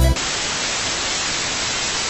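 Steady hiss of static-like white noise, cutting in as the electronic music stops just after the start and holding at an even level.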